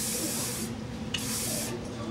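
Aerosol can of oil sheen spray hissing in short bursts onto hair: one spray fades out just under a second in, and a second spray of about half a second follows.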